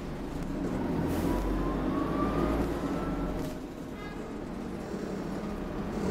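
Dennis Dart SLF single-deck bus heard from inside the cabin while moving: a low engine rumble with a whine that rises in pitch for about two seconds as the bus accelerates, then drops away about halfway through.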